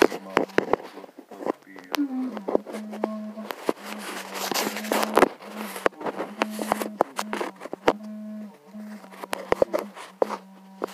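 Scattered sharp clicks and a scrape of tools and metal parts being handled close to an engine block, over a steady low hum that breaks off now and then.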